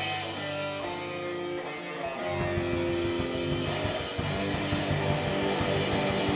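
A live rock band: electric guitars ring out held chords and notes over a bass line. A little over two seconds in, the drums pick up a steady beat again.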